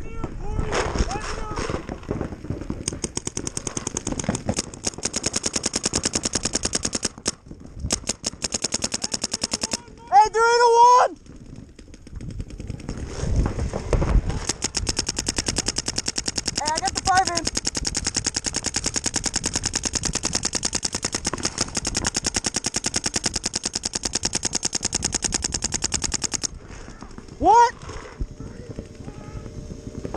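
Paintball markers firing in long rapid streams of shots, many per second. The longest stream runs about fourteen seconds, and the streams are broken by a few short pauses and brief shouts.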